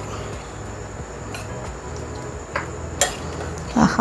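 Metal spoon stirring thick soya chunk curry in a serving bowl, with a few light clicks of spoon on bowl and one sharper clink about three seconds in, over a steady low hum.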